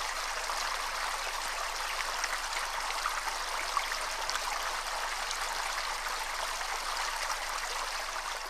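Small stream running steadily over rocks, water spilling over a low stone step in a small rushing cascade.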